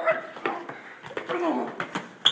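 Short vocal cries from a young man during a scuffle, one sliding down in pitch about a second and a half in, with several sharp knocks and scuffs of bodies and shoes on a hard floor.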